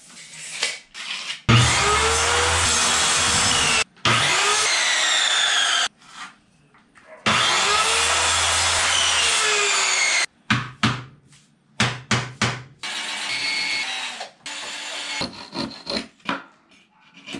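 A corded electric power saw cutting plywood in three runs of a few seconds each, its motor rising in pitch at each start and falling away at each stop. Shorter, choppier strokes follow near the end, a hand saw working the plywood.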